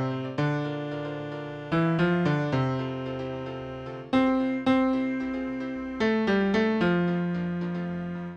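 Computer playback of a choral score from notation software: a sung line rendered as a keyboard-like tone, with a running piano accompaniment above it. Notes strike sharply and die away, and the melody settles on a long held note in the last second or so.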